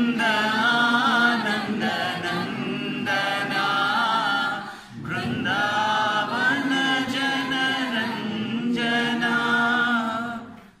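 Several men's and women's voices chanting a devotional Hindu hymn together in unison, unaccompanied, with one short break for breath about five seconds in.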